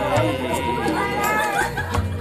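Several voices talking over steady background music.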